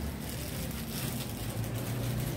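Steady background noise of a shop, with a continuous low hum and an even hiss.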